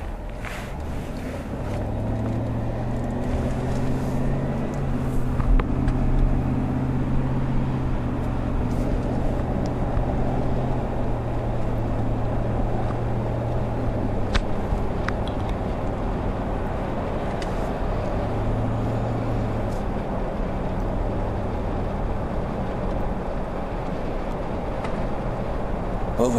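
A car being driven, heard from inside the cabin: a steady low engine hum whose pitch shifts up and down a little with speed, over road noise.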